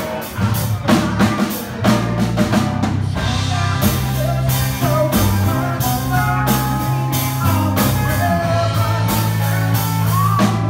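Live rock band playing electric guitars, electric bass and a drum kit. Dense drum hits fill the first three seconds, then the band settles into a steady groove with held guitar chords over the bass.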